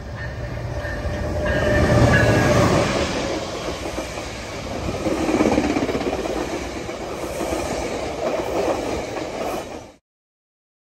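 Siemens SC-44 Charger diesel-electric locomotive passing close by, its engine and rumble loudest about two seconds in. The bi-level passenger cars of the train then roll past with steady wheel-on-rail clatter. The sound cuts off suddenly at the end.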